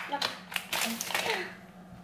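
Plastic packaging of a pack of bacon crinkling and crackling as it is handled, in short sharp bursts mostly in the first second, with a faint voice.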